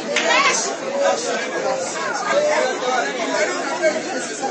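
Several people talking at once, overlapping conversational voices.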